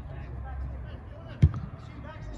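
A football struck once about one and a half seconds in: a single sharp thump, over faint voices calling on the pitch.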